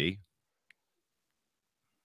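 A man's voice finishing a phrase, then near silence broken by one faint, short click.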